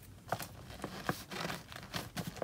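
Paper flat rate mailing envelope crinkling and rustling as it is folded over and pressed shut by hand, with scattered small clicks and taps.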